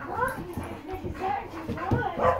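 German Shepherd whining and grumbling in several short calls that rise and fall in pitch, excited as its back is being scratched.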